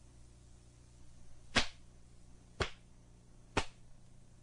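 Three sharp snaps about a second apart, each with a brief swish before it: a taekwondo uniform (dobok) cracking as punches and kicks of the form are thrown.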